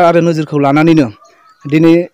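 A man speaking into reporters' microphones, drawing out some syllables on a steady pitch, with a short pause in the middle.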